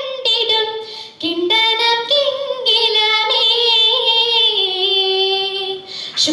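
A girl singing solo into a stage microphone: a slow melody with long, wavering held notes, with a short break a little over a second in, and the singing tailing off near the end.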